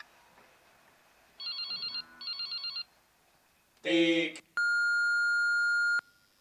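Telephone sound-effect cue: two short trilling rings, a brief burst of voice, then a long steady answering-machine beep that sets up a recorded message.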